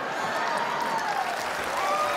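A theatre audience applauding steadily after a joke lands.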